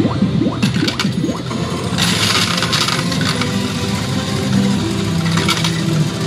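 Pachislot parlor din: a clatter of metal slot medals about two seconds in, over electronic machine sounds and a steady hum of tones.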